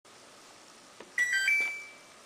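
Intro sound effect for a subscribe-button animation: a mouse click about a second in, then a quick three-note electronic chime, the last note ringing out and fading.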